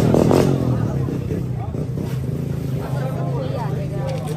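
Voices talking in Burmese and market chatter over a steady low engine hum.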